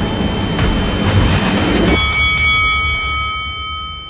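A loud, dense rushing noise builds and cuts off suddenly about two seconds in. A boxing ring bell is then struck about four times in quick succession, and its tones ring on and fade near the end.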